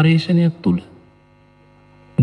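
A man speaking in Sinhala for under a second, then a pause filled by a faint, steady electrical mains hum in the recording.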